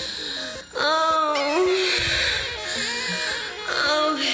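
Late-1980s Chicago house music with a woman's drawn-out, gliding vocal sighs and moans over a sparse synth line. The music briefly dips just before the longest moan, about a second in.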